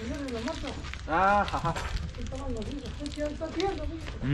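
Indistinct voices of people talking in the background, with a louder, higher-pitched call about a second in and a steady low rumble underneath.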